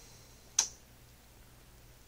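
A single sharp click about half a second in, over quiet room tone with a faint steady low hum.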